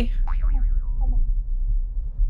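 A springy cartoon 'boing' sound effect that wobbles and falls in pitch, marking the car bouncing over a bump, over the steady low rumble of the car on the road.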